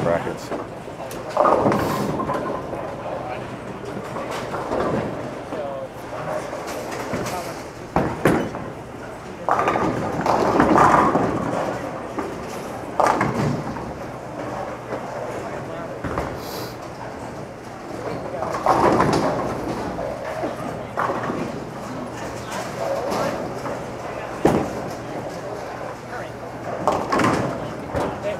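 Bowling alley din: indistinct chatter of other bowlers with several sharp knocks and crashes of balls and pins on nearby lanes.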